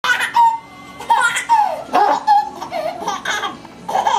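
Baby laughing in repeated short, high-pitched bursts of giggles.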